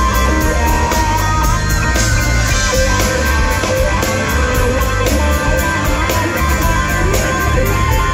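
Live electric blues-rock: a Stratocaster-style electric guitar playing a lead line with bent, wavering notes over the band's heavy bass and drums, loud and continuous.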